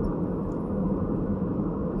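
Steady low rumble of a moving car heard from inside the cabin: engine and tyre noise on the road, with a faint hum.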